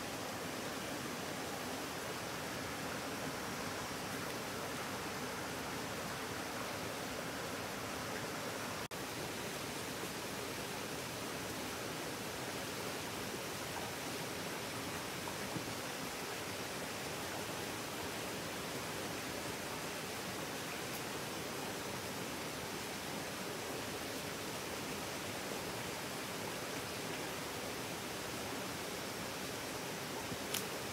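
A small rocky forest stream running, a steady even rush of water.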